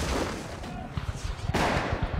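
Battle gunfire from black-powder muskets: a dense run of shots over a low rumble. It thins out for about a second, then a fresh loud burst of firing breaks in about one and a half seconds in.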